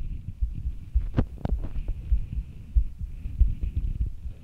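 Irregular low thuds and rumble close on the microphone, with two sharp clicks a little after a second in, over a faint steady hiss.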